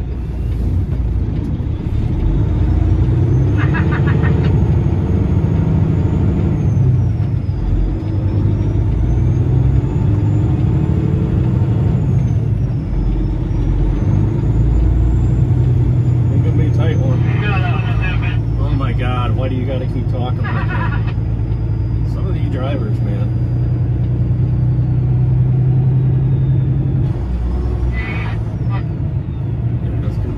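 Tractor-trailer's diesel engine heard from inside the cab, running steadily as the truck pulls away and drives on, with a faint high whine that rises and falls.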